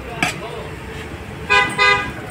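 A vehicle horn toots twice in quick succession near the end, two short flat-pitched honks, over a low hum of street traffic.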